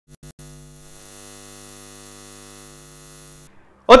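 Electrical buzz of a neon sign sound effect: a few quick stutters as it flickers on, then a steady hum that cuts off about three and a half seconds in.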